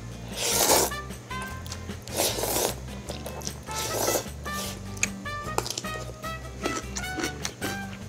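Instant ramen noodles slurped from chopsticks, three long slurps about a second and a half apart, over background music.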